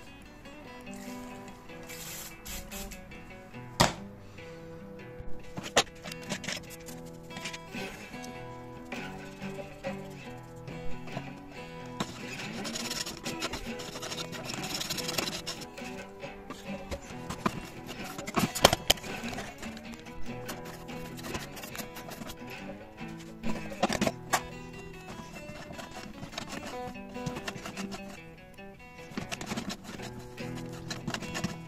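Background guitar music, with a few sharp clicks and knocks over it.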